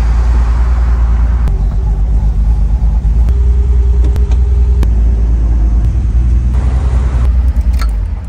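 Classic Mercedes-Benz engine running slowly and steadily with a low rumble, with a few sharp clicks from the gear lever. It begins to die away at the very end as the ignition is switched off.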